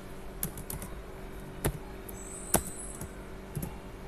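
Computer keyboard keystrokes: a handful of separate, irregularly spaced key clicks, the loudest about two and a half seconds in.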